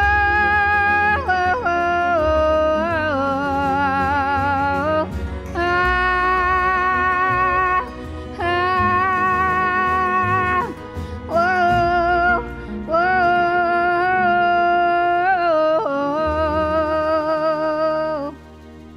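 Woman singing long held notes with vibrato, sliding between some of them, over a low accompaniment; the singing stops near the end.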